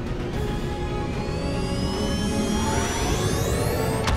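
Dramatic film score under a starship warp-jump sound effect: a whine that rises in pitch from about a second in and climbs faster and faster toward the end, as the ship leaps to warp with a sudden burst.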